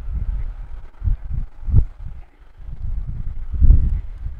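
Wind buffeting the microphone: low rumbling gusts that rise and fall unevenly, strongest near the end.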